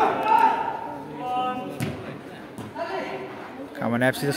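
Mostly men's voices talking in a large covered hall, with a single sharp thump a little under two seconds in.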